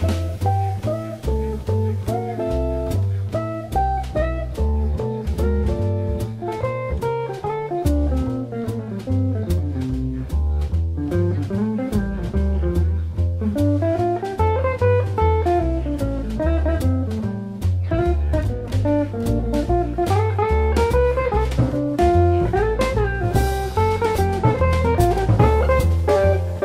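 Jazz quintet recording: a guitar solo in single-note lines over a walking double bass and a drum kit keeping time on the cymbals.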